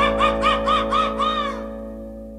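A band's closing chord ringing out: a high warbling note repeats about four times a second over it, stops shortly before the end, and the chord fades away.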